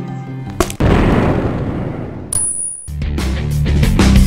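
A sharp crack cuts off guitar music, followed by a loud rushing blast sound effect lasting about two seconds with a brief high whine near its end. Rock music with a heavy beat starts about three seconds in.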